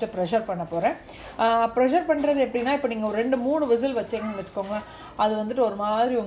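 A woman talking, with no other sound standing out.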